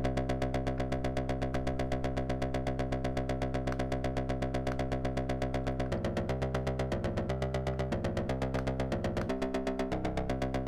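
Reaktor Blocks synth patch: an 8-step sequencer playing an oscillator that another oscillator frequency-modulates, through a low pass gate, in a rapid even run of short synth notes. From about six seconds in, some steps of the pattern change pitch.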